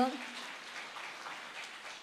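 Soft, scattered clapping from an audience, fading slightly toward the end.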